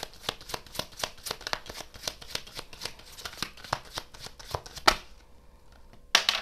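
A tarot deck being shuffled by hand: a quick run of card flicks, about four or five a second, ending in one sharper snap about five seconds in.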